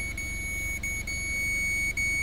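A steady, high-pitched electronic beep, held almost unbroken with a few very short dropouts, over a low steady hum.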